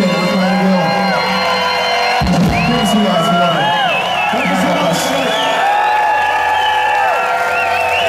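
Audience cheering and whooping after a live song, many long rising-and-falling whoops over a steady held tone.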